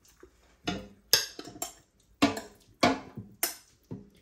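A metal spoon knocking against a glass bowl while chicken wings are scraped out into an air fryer basket: a run of about six separate sharp knocks with a brief ring, roughly two a second.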